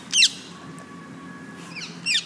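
Small songbird calling: a quick, loud burst of sharp, high, falling chirps shortly after the start, and another short burst near the end.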